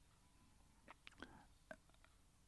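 Near silence, with a few faint mouth clicks and a soft breath in the middle.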